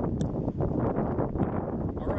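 Wind buffeting an outdoor microphone: a steady, rumbling noise with no clear tone, cutting in abruptly at the start.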